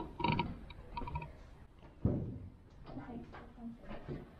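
Faint, indistinct voices, with a single low thud about two seconds in.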